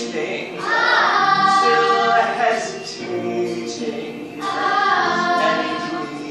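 A children's choir singing a musical number in chorus, with held notes and sliding phrases.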